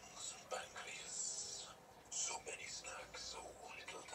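A film soundtrack played through a television speaker and picked up across the room: short, breathy, whispered voice sounds.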